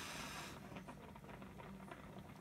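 Faint irregular crackling and popping from orzo heating in a pan on a lit gas burner, with a brief soft hiss in the first half second.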